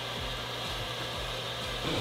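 Facial steamer running, a steady hiss with a faint low hum.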